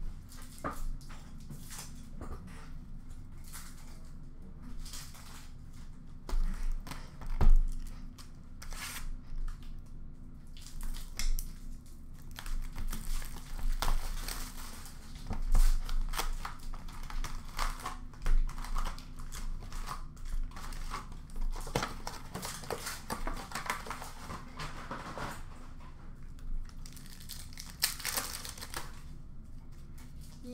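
Hockey card pack wrappers being torn open and crinkled, with cards slid and handled in between: scattered rustles and clicks, busier in the second half, and a single louder knock about seven seconds in, over a steady low hum.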